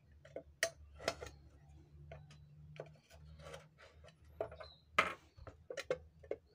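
A utility-knife blade clicking and scraping against the plastic back case of an old portable radio, with hand taps and knocks on the case; the sharpest clicks come about half a second in, about a second in and about five seconds in.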